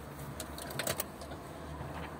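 Steady low hum of a Daewoo Matiz's engine idling, heard inside the cabin. A few light clicks about half a second in and again around a second in.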